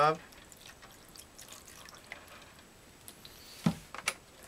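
White vinegar poured from a plastic gallon jug into a plastic tub, a faint trickle and drips. Near the end comes one loud thump, the jug being set down on the table.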